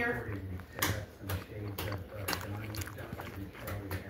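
A person chewing a mouthful of French dip sandwich, with short wet smacks about twice a second over a low steady hum.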